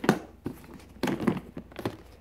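Plastic storage bin lid being unlatched and lifted off: a sharp plastic click at the start, then a run of knocks and rustling as the lid and bin are handled.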